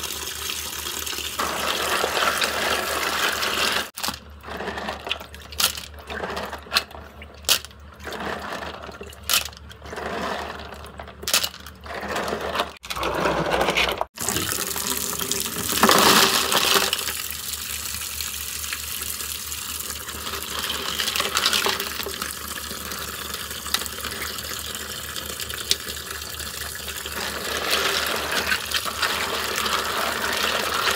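Tap water pouring into a plastic basin of hairy ark clams (sò lông) as a hand stirs them, washing the shells before boiling. The flow sound breaks up into short choppy stretches between about four and fourteen seconds in, with a louder surge a couple of seconds later.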